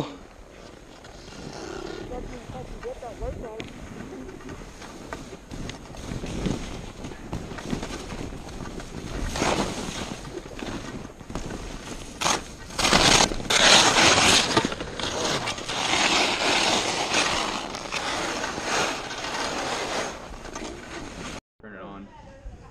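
Skis sliding and scraping over snow on a downhill run: a rushing, uneven noise that swells and fades and is loudest about halfway through. It cuts off suddenly shortly before the end.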